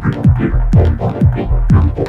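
Techno track: a deep kick drum that drops in pitch, about twice a second, over a steady low bass, with short high percussion ticks between the beats.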